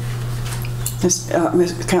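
A steady low hum, with a few faint clicks just before a voice says 'uh' about a second in and begins to speak.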